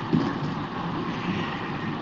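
Steady background hiss and rumble of an open voice-chat microphone line, with no clear event standing out.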